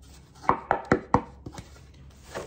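Wooden parts of a mandolin kit, not yet finished, knocking together as they are handled: four sharp knocks in about half a second, then two lighter ones.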